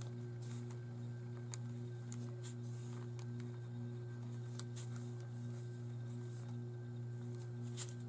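A steady low electrical or mechanical hum, with a fainter tone pulsing over it about twice a second. Over it come a few faint light ticks and scratches of a damp paintbrush working on watercolour paper.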